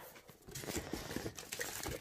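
Rustling and crackling of plastic wrapping and a paper sachet as a hand lifts items out of a cardboard box, starting about half a second in.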